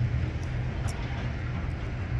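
Steady low rumble of street background noise, with a faint click about a second in.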